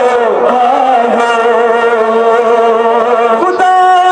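Male voices chanting a Kashmiri noha (Muharram mourning lament) over a loudspeaker, drawing out one long held note before moving to a new note near the end.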